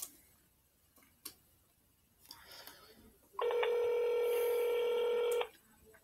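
Telephone ringback tone playing through a phone's loudspeaker: one steady two-second ring, the signal that the called phone is ringing and the call has not been answered. A few light clicks come before it.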